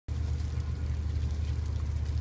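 Steady low rumble of a vehicle's engine running, with no change in pitch.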